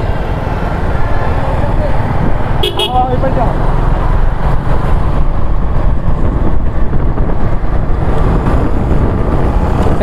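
Riding noise from a moving motorcycle: steady, loud engine and wind rush on the microphone, with a short vehicle horn toot about three seconds in.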